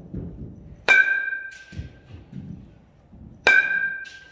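A youth baseball bat hitting pitched balls twice, about a second in and again near the end. Each hit is a sharp ping that rings on for about half a second. Duller low thuds come between the hits.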